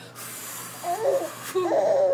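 A breathy whoosh of blowing, then a baby laughing in two short squealing bursts, the second louder, near the end.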